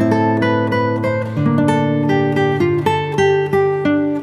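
Background music of plucked acoustic guitar playing a quick run of notes over steady low notes.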